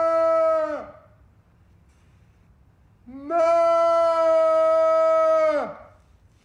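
A man's voice giving a long, held, keening cry in imitation of a haggis call: one call fading out about a second in, then a second long call from about three seconds in. Each swoops up at the start and falls away at the end.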